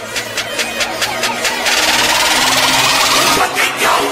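Electronic build-up of a station ident: a fast ticking pulse of about six beats a second, then a swelling rush of noise that grows steadily louder.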